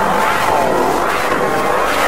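Heavily effects-processed, distorted logo audio: a dense, loud noisy sound with a pitch that swoops down and back up several times in arcs, the kind of phaser-like warping these logo effect renders apply.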